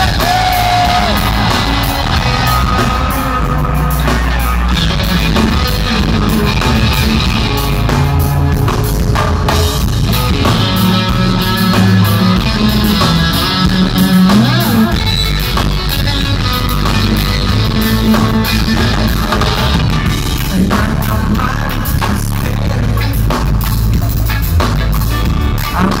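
Live reggae-rock band playing loud and steady: electric guitar, bass guitar and drum kit.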